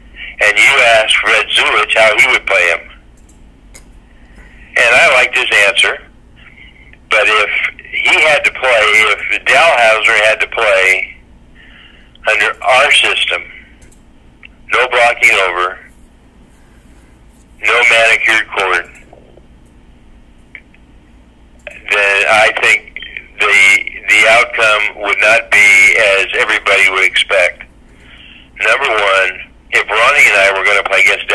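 Speech only: a man talking in phrases with short pauses between them.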